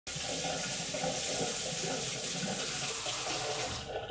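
Kitchen pull-down faucet running a steady stream into a white farmhouse sink, splashing over a hand held under it, shut off near the end.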